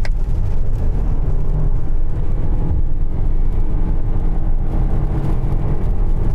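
Lexus LM hybrid's four-cylinder petrol engine at full throttle, droning at near-constant revs while the car accelerates: the CVT automatic gearbox holds the revs steady instead of changing up. Heard inside the cabin.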